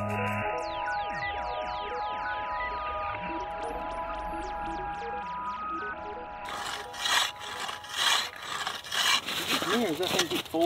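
Background music with steady mallet-like tones and a run of falling glides. About two-thirds of the way in, the music gives way to a hand ice saw rasping through lake ice in rhythmic strokes about once a second, louder than the music, with a man's voice near the end.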